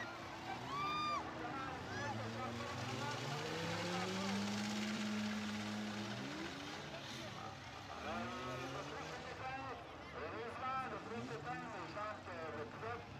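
Demolition derby car engines running and revving on the track under the talk and shouts of a crowd of spectators. One engine revs up a few seconds in and holds a steady note for about two seconds.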